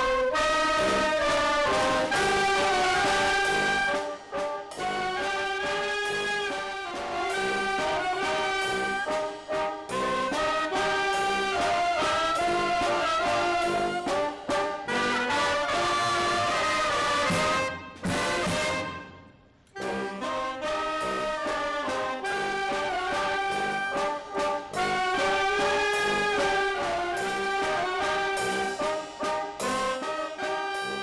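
Youth brass band playing, with trumpets and trombones carrying a melody under a conductor. The music breaks off for about a second and a half around two-thirds of the way through, then resumes.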